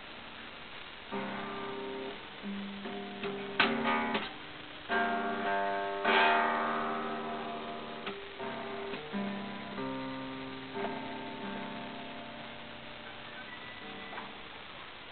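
Acoustic guitar's open strings struck and brushed at random by a baby's hands, in irregular, untuned jangles that ring on and fade. The loudest strums come about three and a half and six seconds in, with softer single plucks scattered between.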